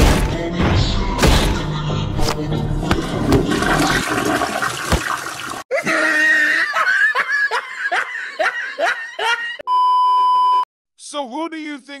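A dense cartoon soundtrack of music and noisy effects with sharp hits cuts off abruptly. Then a cartoon voice laughs in quick rising-and-falling bursts, and a steady beep sounds for about a second.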